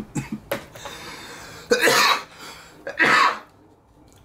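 A man coughing loudly twice, about two and three seconds in, after a long hit from a disposable vape. A long breath out comes before the coughs.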